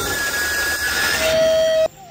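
A flamethrower firing in a film soundtrack: a loud, even hiss with steady electronic tones over it. It cuts off suddenly near the end.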